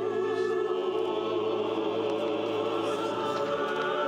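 Mixed church choir singing with pipe organ accompaniment: sustained sung notes with vibrato over a steady low organ tone.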